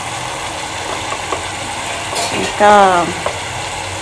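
Prawn curry sizzling in a pan on the stove, a steady hiss with a couple of faint clicks.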